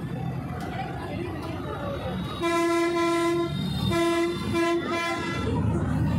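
A horn sounding at one steady pitch: one long blast of about a second, then three or four short toots, over steady background noise.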